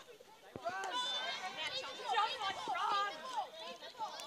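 Voices calling and shouting across a field hockey pitch, fairly high-pitched. A sharp knock comes about half a second in, like a stick striking the ball.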